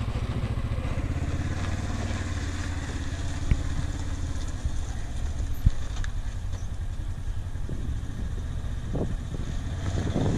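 Side-by-side utility vehicle's engine running steadily as the UTV drives along a dirt road, with two brief clicks in the middle.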